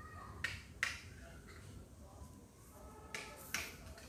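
Needle and thick cotton thread pulled through coarse jute sacking: four short scratchy rasps in two pairs, one pair just under a second in and the other a little after three seconds.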